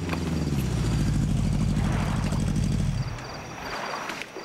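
A vehicle engine winding down in pitch, then running steadily at a low pitch, and cut off about three and a half seconds in, as of a vehicle pulling up and stopping.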